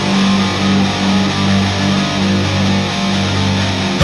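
Black/thrash metal opening riff: distorted electric guitars playing over strong held low notes.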